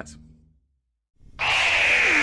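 After a moment of dead silence, a loud rushing sound effect starts suddenly about a second in and holds steady, a hiss with a high tone running through it.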